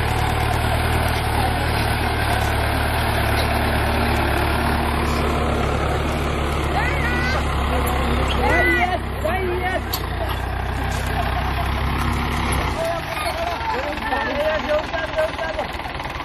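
Mahindra Arjun 605 DI tractor's four-cylinder diesel engine idling steadily, its low note shifting a little about three-quarters of the way through.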